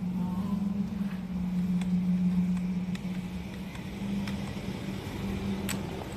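A steady low hum under a few scattered sharp clicks of mechanical keyboard keys, the loudest click near the end.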